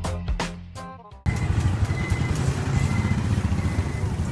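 Background music fading out over the first second, then a sudden cut to live street sound: a motorcycle engine running close by, with a steady low rumble, amid traffic noise.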